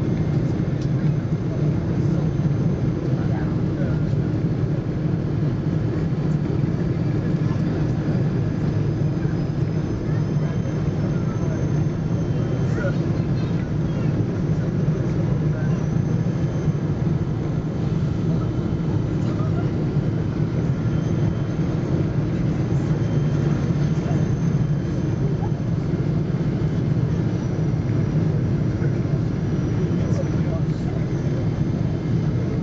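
Steady cabin noise of a Boeing 777 on approach, heard inside the cabin over the wing: its General Electric GE90-85B turbofan engines and the airflow make a constant low rumble, with faint steady high tones above it.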